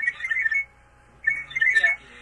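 Electronic alarm beeping in a fast trill of two alternating high pitches. It cuts out for about half a second in the middle, then resumes.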